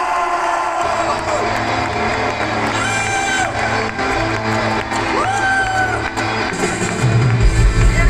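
Live rock band with a horn section playing on stage, amid crowd cheering: a sparse passage with a few held, scooping notes, then bass and drums come in hard about seven seconds in and the music gets louder.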